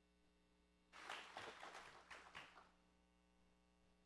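A brief, faint scatter of clapping from a congregation, lasting under two seconds and dying away, over a low steady hum.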